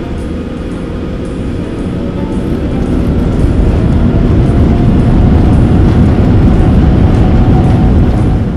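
Jet airliner cabin noise on the takeoff roll: a loud, deep rumble of engines and runway that grows steadily louder as the aircraft accelerates.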